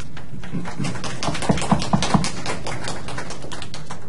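Scattered clapping from a few people: irregular sharp claps, busiest about one and a half to two seconds in, over a steady room hum.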